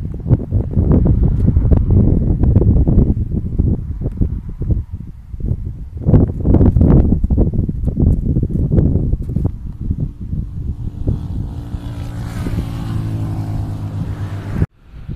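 Wind buffeting the microphone in strong, irregular gusts. From about eleven seconds in, a vehicle passing on the highway adds a steady engine hum and rising tyre noise.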